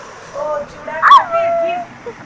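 A young child's high-pitched vocal squeal about a second in, rising sharply then falling into a drawn-out whine, after a softer sound.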